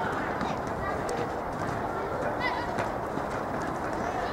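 Children's football game on a dirt pitch: children's voices calling out, with one short high shout about halfway through, over a steady rushing background, with scattered clicks of running feet and ball kicks on the dirt.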